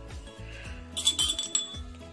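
A metal teaspoon clinks against ceramic crockery a few times about a second in, over steady background music.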